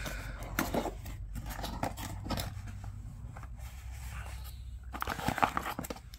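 A small cardboard box being opened by hand and its contents handled: irregular rustles, scrapes and light clicks of cardboard flaps and a coiled power cable, busiest near the end.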